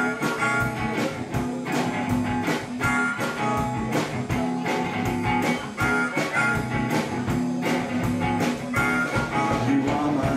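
Live blues band playing an instrumental break: a blues harmonica played through a vocal microphone, wailing and bending notes, over electric guitar and a steady drum beat.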